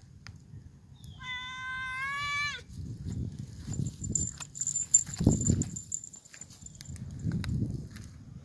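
Bengal kitten giving one drawn-out meow, rising slightly in pitch, about a second in. It is followed by rustling and a bump or two from movement in dry pine straw.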